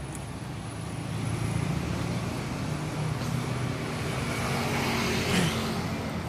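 Steady low hum of a motor vehicle engine running nearby, with a short burst of noise about five seconds in.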